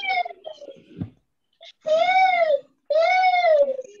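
A baby crying in drawn-out wails, each cry rising and then falling in pitch. One cry is ending at the start, and two long cries follow close together about two seconds in.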